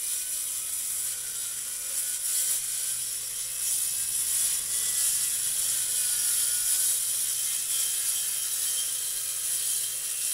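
Makita corded circular saw running and ripping lengthwise through a weathered reclaimed board: a continuous high, hissing cutting noise over the motor's whine. It gets a little louder from about four seconds in.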